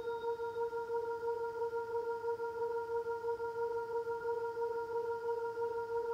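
Synthesizer pad, the layer that sits under the piano melody of a beat, playing on its own and holding one sustained note with a gentle pulse in its level, about three a second.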